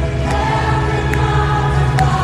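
A live worship song played over an arena PA: a male singer backed by a full band, with strong sustained bass and held chords.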